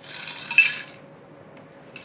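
Metal cocktail shaker clinking against a glass cocktail glass as it is lifted away after pouring: about a second of rattling with one sharp metallic clink about half a second in, then a faint click near the end.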